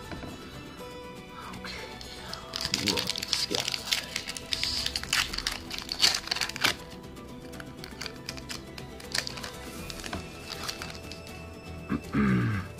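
Foil booster-pack wrapper crinkling and tearing as it is opened by hand, a dense crackle loudest from about two and a half to seven seconds in, then quieter handling of the cards. Music plays underneath.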